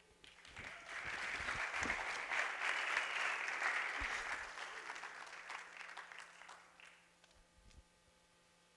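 Audience applauding, swelling over the first two seconds and dying away about seven seconds in.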